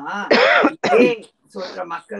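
A woman coughing and clearing her throat: two loud coughs about half a second apart in the first second, followed by talking.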